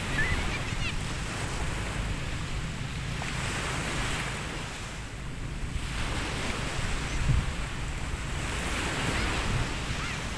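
Small surf waves washing onto the beach, the wash swelling and easing with a lull about five seconds in. Wind rumbles on the microphone.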